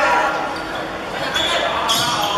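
A handball bouncing and slapping on a wooden sports-hall court during play, a few sharp knocks, over the shouts and chatter of players and spectators, echoing in a large hall.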